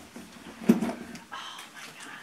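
Brief voice sounds: a short exclamation about two-thirds of a second in, then a few soft, half-spoken sounds.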